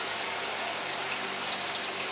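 Steady rushing water noise from a fish spa tank, an even hiss with no breaks.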